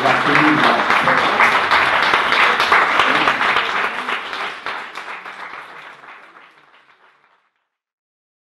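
Audience applauding, a dense patter of many hands clapping with a few voices mixed in, fading away to nothing about seven seconds in.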